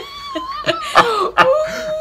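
A man and a woman laughing hard, with a high-pitched, drawn-out wailing laugh that slides down in pitch and holds in the second half, broken by short gasps.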